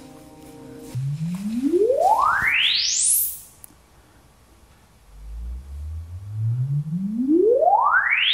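Sennheiser Ambeo Max soundbar playing its room-calibration test signal, used to measure the garage's acoustics. A cluster of steady tones holds for about a second. Then a pure tone sweeps upward from low bass to the very top of the range over about two seconds, and about five seconds in a second, slower sweep begins deeper in the bass and climbs.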